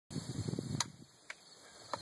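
Three sharp metallic clicks from a UTAS UTS-15 bullpup pump shotgun's action, after a short rustle of handling, with no shot going off: the gun is failing to fire.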